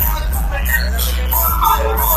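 A song with vocals and heavy bass playing loud through the aftermarket car audio system (several speakers and two subwoofers) of a modified Mahindra Thar.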